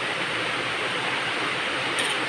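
A pot of soup boiling hard in an aluminium pot, giving a steady, even rushing hiss with no let-up.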